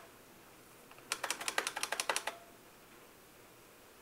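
Computer keyboard typed in a quick run of about a dozen keystrokes, starting about a second in and stopping a little over a second later.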